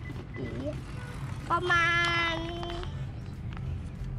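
A boy's voice drawing out one word into a long, steady held tone for about a second, over a low steady outdoor background hum.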